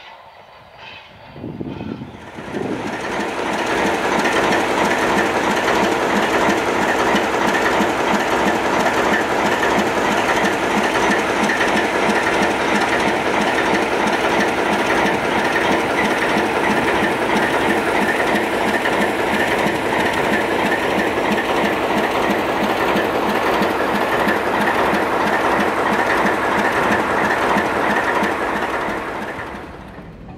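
ALCO RS-3 diesel-electric locomotive's 244 V12 diesel engine running steadily and loudly: the typical ALCO sound. It swells up about two seconds in and fades near the end.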